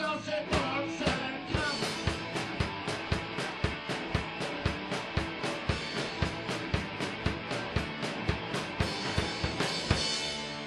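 Punk rock song in an instrumental passage: a fast, even drum-kit beat with bass drum and snare driving under the full band, with no vocals.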